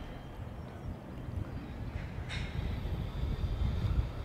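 Uneven low vehicle rumble outdoors that swells toward the end, with a short hiss about two and a half seconds in.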